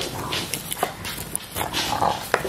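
English bulldog gnawing a rubber dumbbell chew toy, with irregular snuffling, noisy breaths and small clicks of teeth on the toy.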